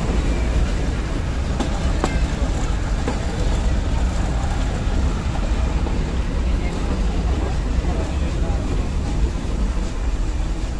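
Nilgiri Mountain Railway passenger coach running along the track, heard from on board as a steady rumble with a few clicks of the wheels on the rails between one and three seconds in.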